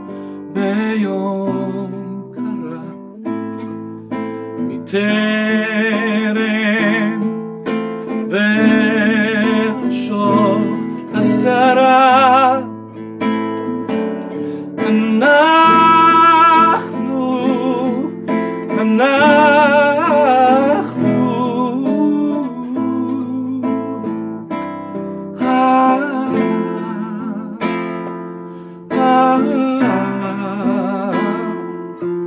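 A man singing with wide vibrato, accompanying himself on a nylon-string classical guitar. The voice comes in phrases over steady picked and strummed chords, loudest and most full-voiced around the middle.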